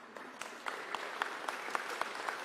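Audience applauding: a standing crowd's scattered hand claps that start about half a second in and carry on steadily.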